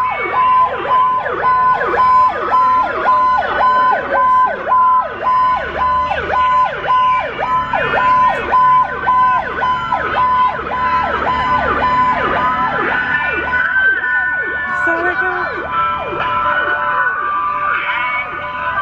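Fire truck sirens sounding together: a fast, repeating downward-sweeping yelp overlaid with slower rising-and-falling wails. A steady on-off beep, about two a second, runs with them and stops about two-thirds of the way through.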